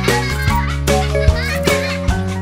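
Children's song backing music with a steady beat, with a child's voice over it near the start.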